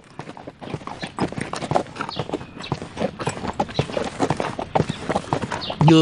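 A horse's hooves clip-clopping as it walks, a continuous run of clops.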